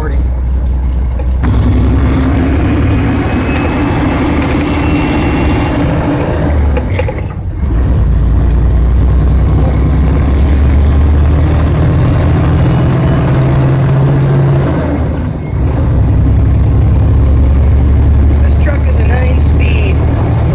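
Mack truck tractor's diesel engine heard from inside the cab, driving without a trailer and pulling through the gears of its nine-speed transmission. The engine note drops off briefly twice, about seven and a half and fifteen and a half seconds in, as between gear shifts, then picks up again.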